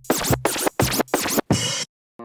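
Turntable record scratching in a short music sting: a rapid run of back-and-forth scratches that cuts off abruptly near the end.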